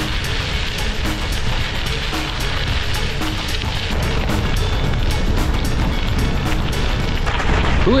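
Background music over the steady rush of bicycle tyres rolling fast on a gravel road, with wind on the microphone.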